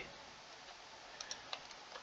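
A few faint computer keyboard keystrokes, short clicks bunched together a little past a second in, over low steady hiss.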